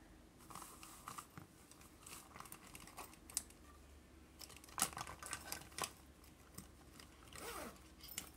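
Faint rustling and light clicking of wooden pencils and a fabric zippered pencil pouch being handled in a ring binder, with a quick run of clicks about five seconds in.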